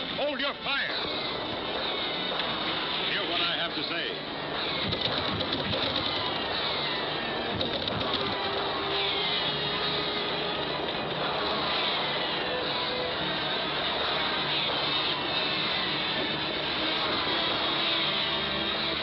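Dense animated-film soundtrack: a busy orchestral score, loud throughout, laced with many short falling high glides.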